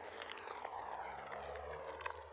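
Water sloshing and lapping around a wading tiger, with small splashes, over a steady low drone.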